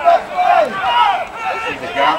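Several voices shouting over one another, spectators and players calling out during rugby play.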